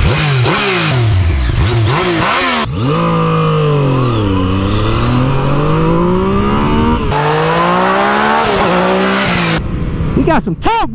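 A Yamaha MT-09's inline three-cylinder engine revving hard: several quick rises and falls in pitch, then a long drop and a steady climb as the bike slows and accelerates again. The sound breaks off abruptly a few times between takes.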